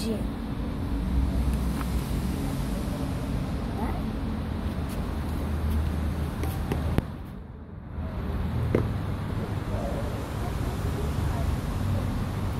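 Steady low outdoor background rumble with faint voices and a few light clicks. The sound drops out abruptly for about a second, seven seconds in.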